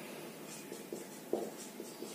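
Marker pen writing on a whiteboard: faint scratchy strokes with a few light taps as the tip touches down.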